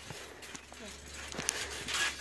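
A few light knocks and taps from a phone being handled, the loudest about one and a half seconds in, over a faint voice.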